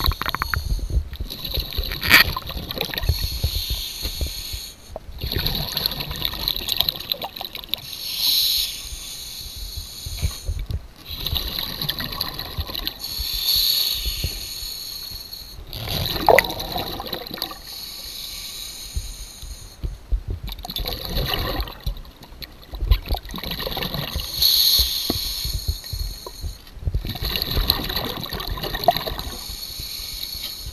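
A scuba diver breathing through a regulator underwater: a hissing inhale and a bubbling exhale, repeating in cycles of about five seconds.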